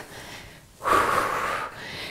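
A woman's single heavy breath, a bit under a second long, starting about a second in, while she works out with dumbbells: breathing hard from exertion.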